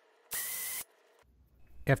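A short burst of an electric drill, about half a second long, boring a hole in a metal radio chassis.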